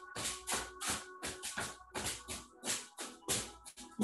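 A hand tapping and slapping rapidly on the back of the leg through clothing, as a self-massage, about four light slaps a second in an uneven rhythm.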